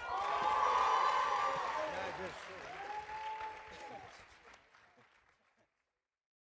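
Audience applauding and cheering, with two long whoops over the clapping. It fades out about five seconds in.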